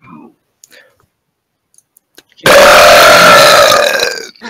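Faint sounds close to the microphone, then about two and a half seconds in a sudden, very loud burp held for about a second and a half, so loud it overloads the microphone.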